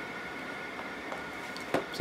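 Steady room noise in a small room with a faint high-pitched whine, and one soft click shortly before the end.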